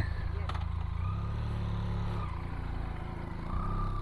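Motorcycle engine idling with a steady low rumble.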